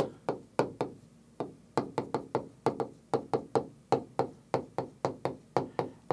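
Stylus tip tapping and clicking on the glass of a large touchscreen while handwriting, an irregular run of short, sharp taps about four a second.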